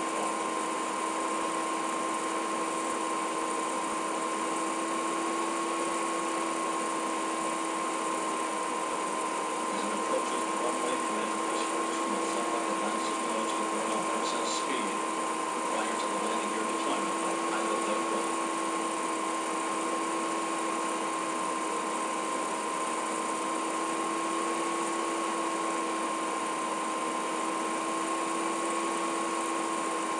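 Steady hum and hiss holding a few constant tones, even in level, with faint indistinct sounds in the middle.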